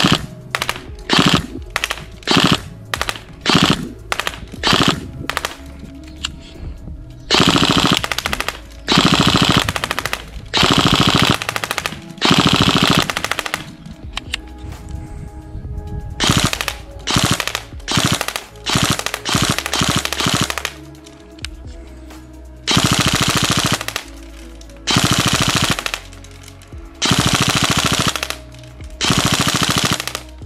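Tokyo Marui MP5A5 Next Gen Recoil Shock airsoft electric gun firing: quick three-round bursts, then longer full-auto strings of about a second each, with the recoil-shock mechanism cycling on every shot.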